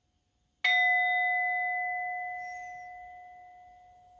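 Metal singing bowl struck once with a wooden mallet about half a second in, ringing with one steady low tone and a few higher overtones that slowly fade.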